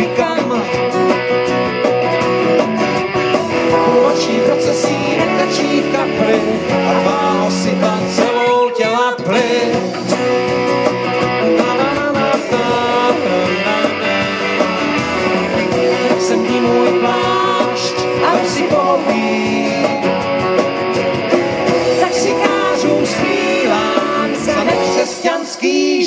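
Live band music: electric and acoustic guitars played over a drum kit, the whole band playing on without a break.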